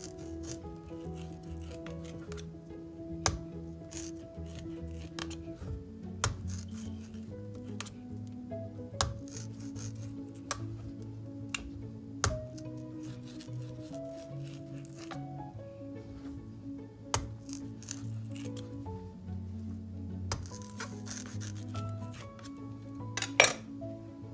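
Background music with steady held notes, crossed every few seconds by sharp short knocks as a knife is stabbed into the hard rind of a raw spaghetti squash.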